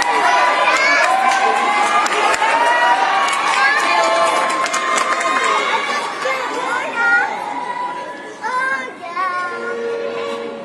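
Crowd cheering and shouting, many high young voices overlapping at once; the cheering thins out and quietens over the last few seconds.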